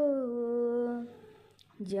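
A woman's voice singing a devotional Sanskrit hymn, holding a long note that slides down in pitch and fades out about a second in; after a brief pause the next sung phrase begins near the end.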